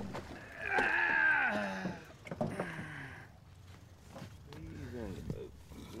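Anglers' excited voices without clear words while a large catfish is hauled into the boat: a drawn-out call about a second in, then shorter ones, with a few knocks.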